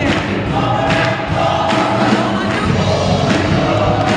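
Gospel choir singing live, a lead singer on microphone over the full choir, with the audience clapping along.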